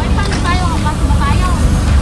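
Wind buffeting the microphone: a heavy, steady low rumble under faint voices.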